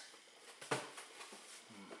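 Quiet handling of a cardboard box and paper leaflet, with one sharp tap about a third of the way in, and a soft hummed "mm-hmm" near the end.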